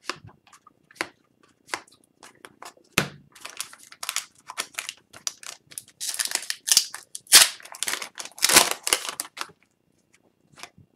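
Cardboard trading cards being handled: sharp clicks and snaps as cards are flicked and slid off a stack, with a few longer swishes of cards rubbing past each other in the second half.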